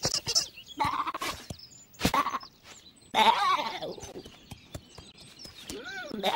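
A cartoon lamb's voiced bleats: a few short calls, then a longer wavering one about three seconds in.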